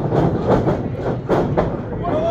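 Repeated thuds and slaps from a wrestling ring, about two to three a second, over a low rumble and crowd noise.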